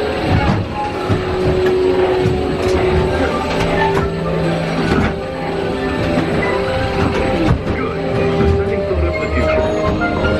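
Dark-ride soundtrack music with long held notes, playing through the ride vehicle's speakers over the low rumble of the Spaceship Earth vehicle moving along its track.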